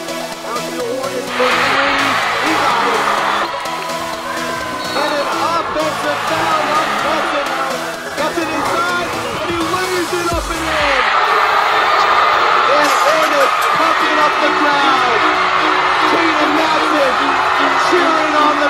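Background music over basketball-gym crowd noise, full of shouts. The crowd grows louder about a second and a half in, eases off a couple of seconds later, and swells again from about ten seconds on.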